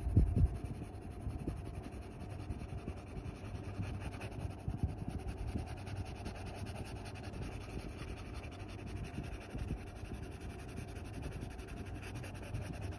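Graphite pencil shading on sketchbook paper: a steady run of quick, small scratchy strokes as the lead rubs back and forth. There is a brief louder bump right at the start.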